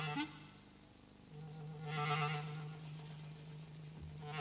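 Clarinet held on a low sustained note, swelling twice into a brighter, fuller tone, with a quick upward slide just after the start.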